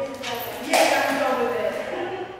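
A person's voice speaking loudly, the words not made out, strongest from just under a second in.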